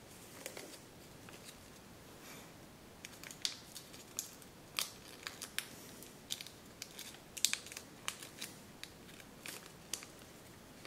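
Folded kraft paper crackling as fingers pinch and shape it, in short irregular snaps and crinkles. The sharpest come a few seconds in and again in the second half.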